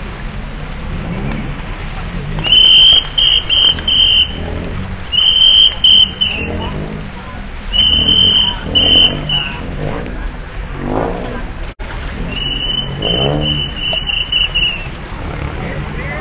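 Traffic whistle blown in repeated groups of short, sharp, high-pitched blasts, the usual signal of officers directing traffic around a stalled car. Voices and a steady low rumble of traffic and water run beneath it.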